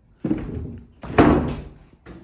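A door being pushed and banging: two loud thuds with a rattling tail, about a second apart, the second louder.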